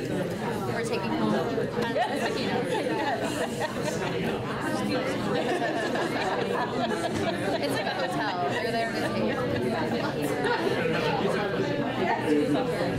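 Many people talking at once in small groups: a steady babble of overlapping conversations, with no single voice standing out.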